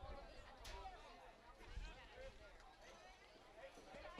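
Faint, distant voices of players and spectators calling out around a soccer field, with one short sharp knock about half a second in.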